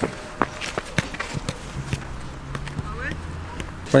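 Footsteps on a concrete walkway: a series of sharp clicks about three a second, with a faint low hum behind them in the middle.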